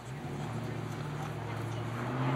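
A motor running with a steady low hum that grows gradually louder.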